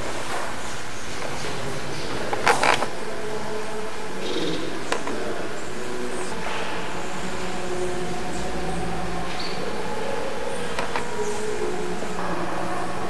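Steady indoor room noise with faint, indistinct voices in the background, broken by a few short knocks or clacks, the loudest about two and a half seconds in.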